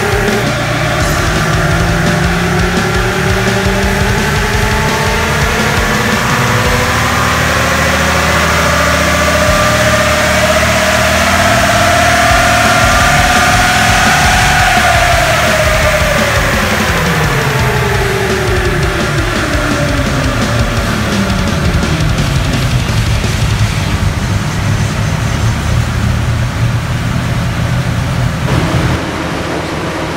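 Nissan Y62 Patrol's 5.6-litre petrol V8 on a chassis dynamometer on its factory tune, making a full-load power run with the tyres turning the rollers. The engine note climbs steadily in pitch for about fourteen seconds, then falls away as it winds down. Music plays over it.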